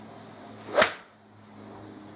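A golf club strikes a ball off a practice mat in a full swing: one sharp crack about a second in.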